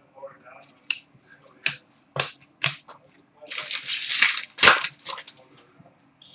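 Cardboard trading cards being handled and flipped through in the hands: a string of short sharp snaps and flicks, with a longer rustling slide of cards a little past the middle.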